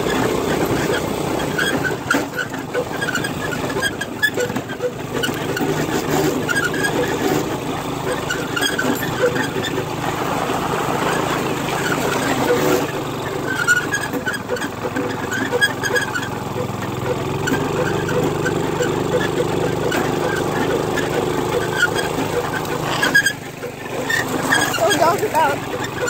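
Go-kart engine running continuously while the kart is driven over bumpy ground, the noise dipping briefly near the end.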